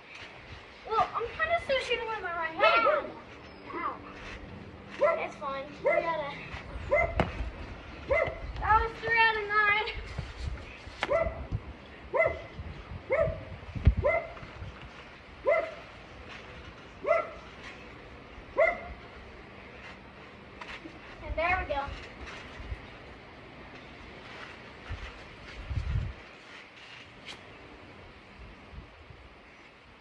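A dog barking, a run of short barks about one a second, with some longer wavering yelps before and after. A few low thumps sound in between.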